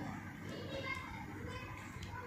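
Faint background voices over low room noise, while a pen writes a word on paper.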